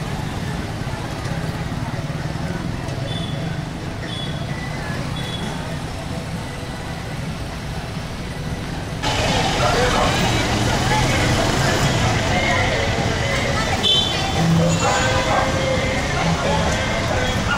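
Busy city street traffic: motorcycles, cars and motorised tricycles passing, with people's voices mixed in. The overall level steps up abruptly about nine seconds in.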